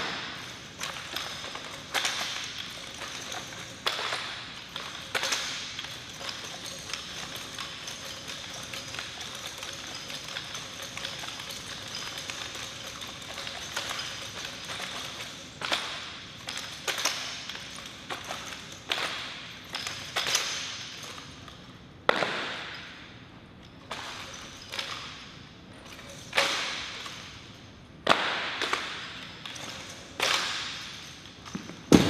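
Ceremonial drill rifles being spun and handled: sharp slaps of hands on the rifles and thuds of rifle butts on the hard floor, one every second or two, each with a short echo in the hall. There is a quieter stretch in the middle, then the strikes pick up again.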